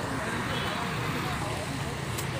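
Street traffic noise: a steady hum of passing motorbikes and cars, with people talking in the background.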